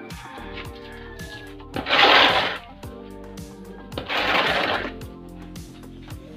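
Background music with a steady beat, over which a steel shovel scrapes twice through wet cement mortar on a concrete floor, each scrape lasting under a second, the first about two seconds in and the second about four seconds in.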